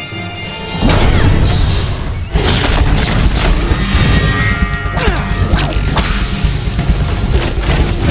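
Film score music with animated fight sound effects: crashes, booms and whooshes layered over it. The mix gets much louder about a second in and stays dense with hits.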